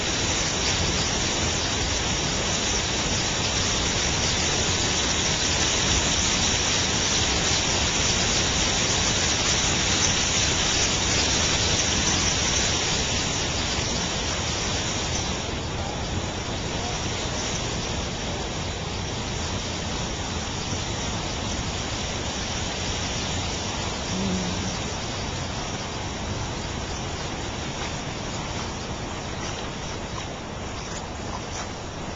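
Steady rushing of shallow creek water running over rocks and gravel, a continuous noise with no distinct events, growing slightly quieter and less hissy about halfway through.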